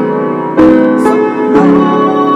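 Piano-toned keyboard playing slow sustained chords, with a new chord struck about every second.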